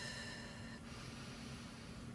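Quiet, slow breath drawn in through the nose: a singer's calm, deep breath filling the body.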